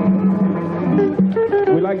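Live band music: a held low note with sustained tones above it, then a phrase of changing notes about a second in, with plucked strings prominent.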